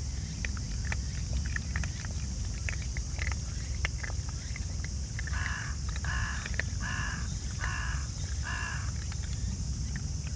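Raccoon dog cubs eating dry food pellets, with many small crunches and clicks, then a crow cawing five times at an even pace from about halfway in. A steady high hiss runs underneath.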